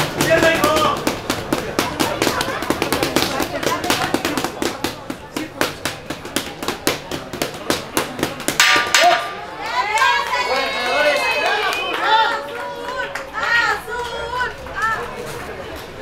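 Boxing gloves smacking against leather focus mitts in a rapid run of punches, several a second, through roughly the first half. Children's voices and chatter take over in the second half.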